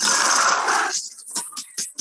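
Soundtrack of an animated teaser film played over a screen share: a loud noisy burst lasting about a second, then a quick run of short sharp hits, about seven a second.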